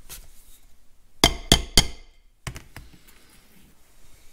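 A hammer striking metal: three quick, sharp blows that ring, followed by two lighter knocks.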